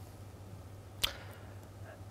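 Quiet room tone with a single short click about a second in.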